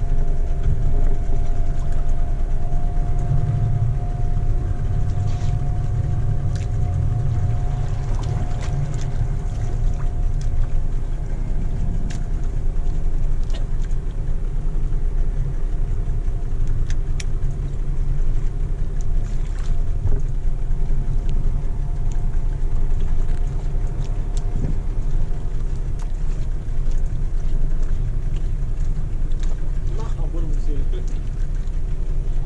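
Small boat's engine running steadily: a low rumble with a constant hum over it, and a few faint clicks scattered through.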